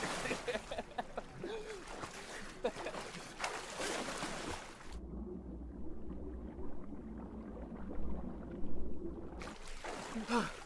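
Two people splashing and thrashing in a pool. About halfway through the sound turns to a muffled underwater rumble for about four seconds, then the surface splashing comes back just before the end.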